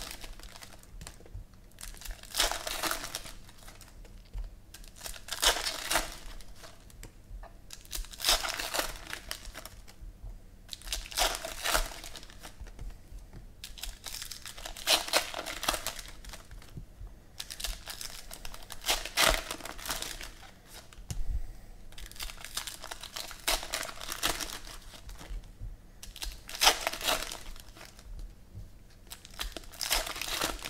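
Foil wrappers of Panini Prizm football card packs crinkling and tearing as they are ripped open by hand, in repeated short bursts every second or two.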